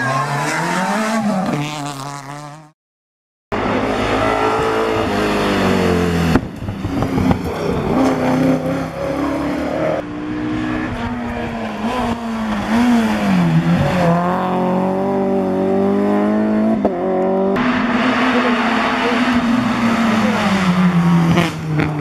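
Rally cars' engines revving hard in a series of short cuts, each one rising in pitch as the car accelerates and dropping at the gear changes. Near the start the sound fades out to a second of silence before the cars begin.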